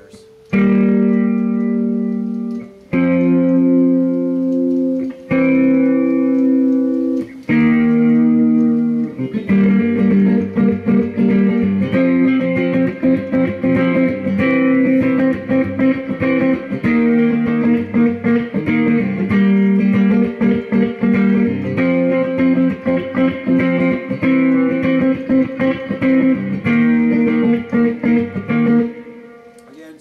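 Electric guitar playing chords: first four chords, each left to ring about two seconds, then a quicker, choppy rhythm of chords that stops about a second before the end.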